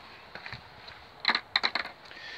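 Caravan door being handled beside its Fiamma door lock: a quick run of five or six sharp clacks and knocks in the second half.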